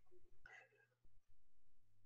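Near silence in a pause between words on a video call, with a faint steady low hum and a brief faint breathy vocal sound about half a second in.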